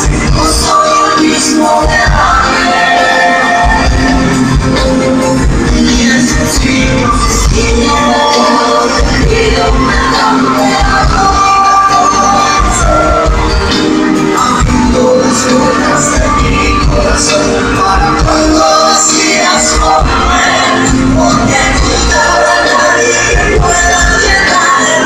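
Live pop band playing loud, with a steady drum beat, while a male singer sings into a microphone, heard from the audience in a large hall.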